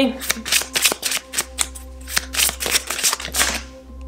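A deck of oracle cards being shuffled by hand: a rapid run of crisp card flicks and slaps that stops shortly before the end. The reader is reshuffling because several cards jumped out at once instead of one.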